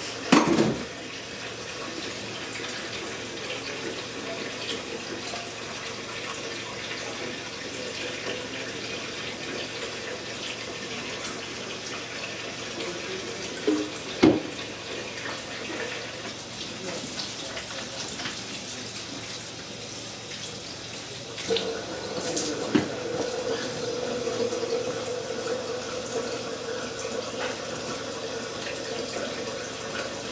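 Water running from a sink tap in a steady stream, with a knock about half a second in and another about 14 s in. About two-thirds of the way through, the running water takes on a steady tone.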